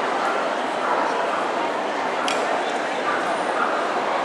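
Steady din of a busy dog-show hall: crowd chatter mixed with many dogs yipping and whining in the background. A brief sharp click cuts through about two seconds in.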